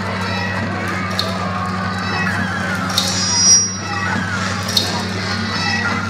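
Lo-fi experimental noise from home-made machines built from turntables, motors and synths: a steady low drone with a sharp click recurring about every two seconds. About halfway through, a brief high squeal swells up.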